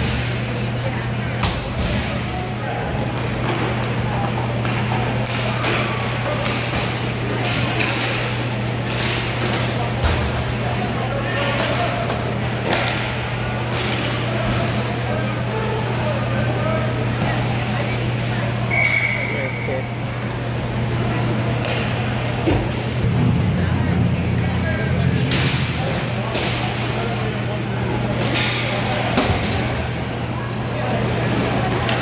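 Roller hockey game in an indoor rink: sticks clacking on the puck and each other in scattered sharp knocks, with indistinct players' voices over a steady low hum.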